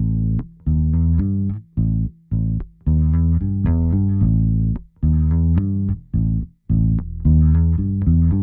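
Electric bass guitar, a G&L recorded direct, playing back a line of separate, evenly played notes with short gaps between phrases. It runs through GarageBand's multiband compressor, which is only lightly shaving off the peaks of the notes.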